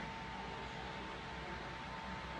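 Electric fan running: a steady hiss with a faint, steady whine.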